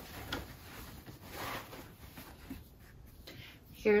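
Soft rustling and handling noise of a cotton dust bag as a sandal is drawn out of it, with a faint click near the start and a brief louder rustle about a second and a half in.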